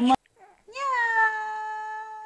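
A baby's long vocal 'aah', starting just under a second in with a small rise and fall in pitch, then holding one steady note.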